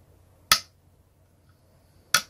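One sharp click about half a second in: the Planet Express ship figure snapping against the magnetic strip on its clear plastic display-stand arm.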